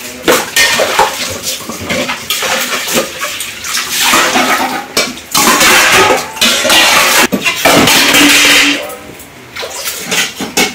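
Water running and splashing into plastic buckets and basins, with stainless steel plates and bowls clinking and clattering as they are washed and stacked.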